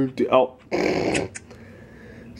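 Short non-word vocal sounds: a brief pitched cry, then a rough, growly noise lasting about half a second.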